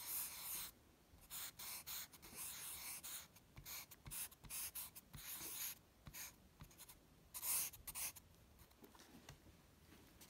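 Marker tip drawing a graffiti tag on sketchbook paper: a series of short strokes, each under a second, with brief pauses between them, stopping near the end.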